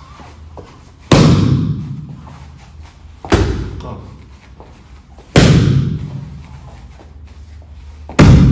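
Three palm strikes smacking a leather focus mitt, about two seconds apart, each a sharp loud slap followed by a short echo.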